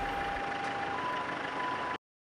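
A two-tone alarm alternating between a lower and a higher tone, each held about a second, over steady outdoor background noise. The sound cuts off suddenly at the end.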